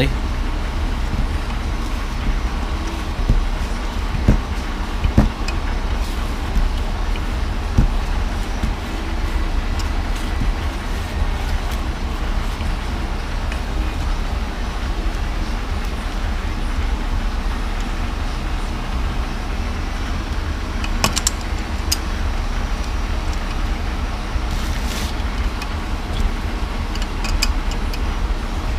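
Steady low background rumble with occasional short metallic clicks and knocks of a wrench working a welded-on exhaust stud on a cast aluminium LSX cylinder head.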